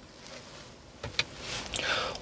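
Quiet car cabin with a single faint click about a second in, then soft rustling that grows toward the end.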